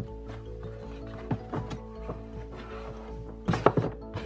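Background music with steady held notes, under a few knocks and thuds from a rubber-sheathed cable and its steel-tube reel being handled as the cord is put back on the drum. The loudest knocks come in a short cluster near the end.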